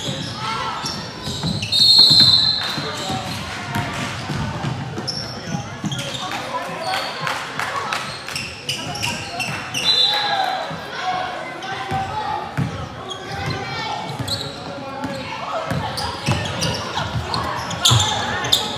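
Sounds of a basketball game in a gymnasium hall: a basketball bouncing on the hardwood court, players' and spectators' voices, and brief high-pitched squeals, the loudest about two seconds in and another about ten seconds in.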